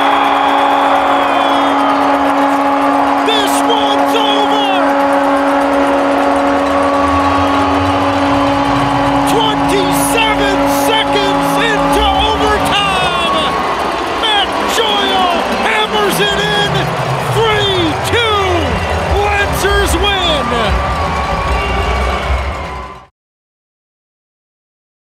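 Arena goal horn sounding one steady low tone for about thirteen seconds, marking a goal, over a cheering crowd. Music with a heavy bass beat then plays under the crowd's shouting, and the sound cuts off shortly before the end.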